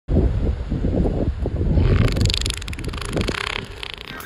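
Wind buffeting an outdoor phone microphone in uneven low gusts, with a rushing hiss joining about halfway through.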